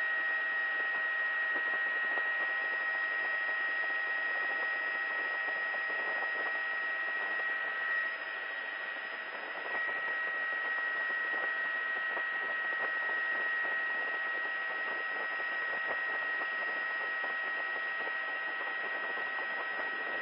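Helicopter cabin noise heard over the crew's intercom line: a steady hiss with a constant high whine and fainter steady tones, dipping slightly for a couple of seconds about eight seconds in.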